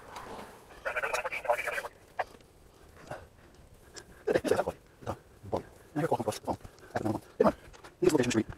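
A long-handled brush scrubbing on the van's roof for about a second, then muffled talking in the background.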